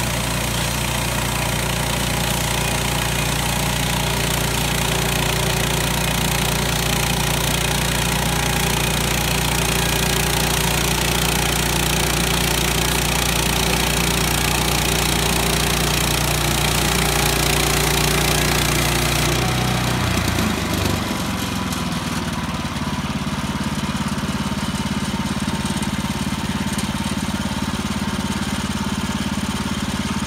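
Woodland Mills portable bandsaw mill running, its gas engine driving the band blade through a log with a steady high hiss of cutting. About two-thirds of the way in the cutting hiss stops and the engine note drops, then runs on steadily at the lower speed.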